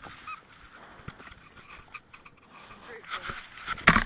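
A dog gives one short, high whine about a third of a second in. Faint rustling follows, then louder scuffing and handling noise builds near the end and is topped by a sharp knock.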